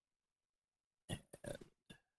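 Silence for about a second, then a man's voice: a short spoken 'and' with a grunt-like hesitation sound.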